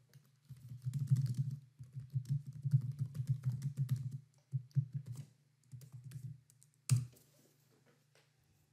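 Typing on a computer keyboard: quick runs of keystrokes with short pauses, then a single harder keystroke about seven seconds in.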